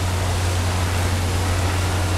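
Steady, loud rushing noise with a low continuous hum from a quarry's crushed-stone loading plant, as crushed dolomite is loaded from the crushers onto trucks.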